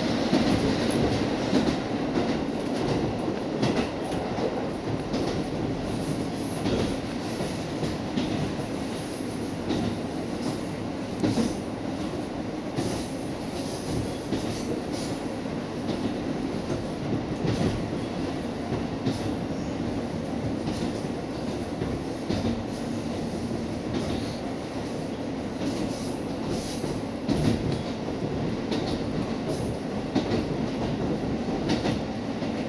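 Diesel railcar heard from inside its passenger cabin while running along the line: a steady rumble of engine and running gear, with clicks of the wheels over rail joints coming now and then.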